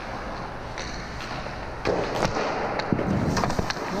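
Ice hockey goalie's skates scraping across the ice in hard post-to-post pushes, louder from about halfway through, with several sharp clicks and knocks of stick, pads and puck on the ice.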